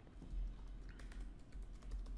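Typing on a computer keyboard: a run of quiet, irregular key clicks.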